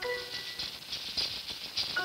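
Maracas shaking a quick rhythm on their own in a break in the music, with a held chord dying away at the very start.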